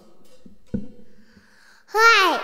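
A microphone being handled: a single knock about three-quarters of a second in and faint rustling, then a young child's high voice starts right at the end.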